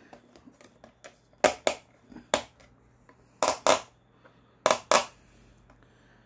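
A small screwdriver prying at the plastic housing of a Ford Falcon BA/BF wing mirror, working at the clips that hold the coloured back cover. It gives about seven sharp plastic clicks, mostly in pairs, with quiet handling between them.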